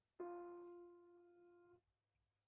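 Grand piano: a single mid-range note struck just after the start, ringing and fading, then damped off suddenly shortly before the end.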